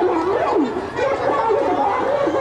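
Speech only: a high-pitched voice talking, with a short dip about halfway through.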